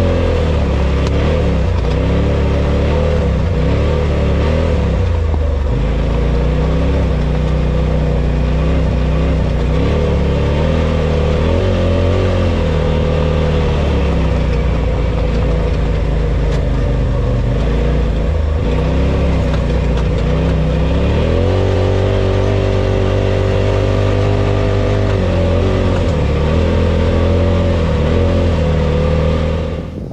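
Polaris RZR Pro XP's turbocharged twin-cylinder engine heard from inside the cab as the side-by-side drives over sand dunes, the revs rising and falling repeatedly as the throttle comes on and off, with a longer steady stretch at higher revs about two-thirds of the way through.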